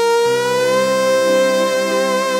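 Electronic keyboard holding one long lead note with a slight vibrato, joined about a quarter second in by a sustained lower chord: the opening of a song.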